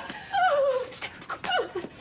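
A woman's distressed whimpering: a high, wavering cry that slides down in pitch, then a shorter one about a second and a half in, with breathy panting between.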